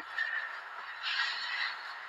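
Faint rustling of a person moving about wrapped in a fleece blanket, with a slightly louder brief rustle about a second in.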